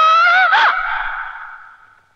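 A woman's high, drawn-out scream that wavers in pitch, swoops up and back down about half a second in, then dies away in a long echo.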